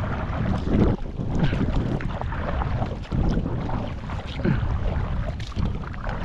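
Kayak paddle strokes splashing and dripping in the water, under steady wind buffeting the microphone.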